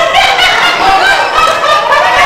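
A woman's high-pitched voice, rising and falling in quick, unbroken syllables.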